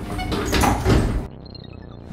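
Elevator doors sliding open as a sound effect: a noisy slide that peaks about a second in and cuts off suddenly, leaving a low hum.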